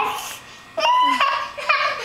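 A toddler laughing in short high-pitched bursts, starting a little under a second in and again near the end.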